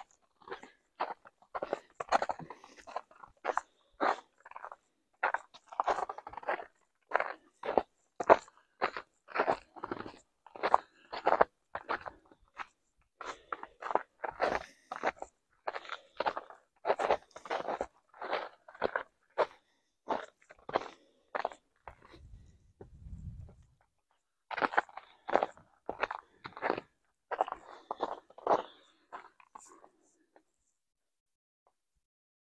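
Footsteps crunching through patchy snow and dry leaf litter on a woodland trail, at a steady walking pace of about two steps a second. The steps stop for a couple of seconds about two-thirds of the way in, leaving only a faint low rumble, then resume.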